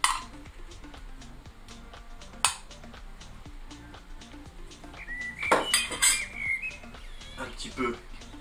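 A metal utensil clinking against a stainless-steel bowl and a ceramic plate as dates are lifted out and set on the plate. Sharp single clinks at the start and about two and a half seconds in, then a quick run of clinks and scrapes a little past the middle.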